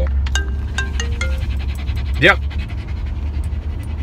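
A phone's marimba-style ringtone plays its last few short notes and stops about a second and a half in. A dog pants over a steady low rumble in the car cabin.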